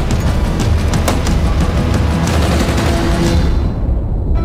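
Film soundtrack at a violent climax: a dense barrage of gunfire and explosions over dramatic music. It dies away just before the end.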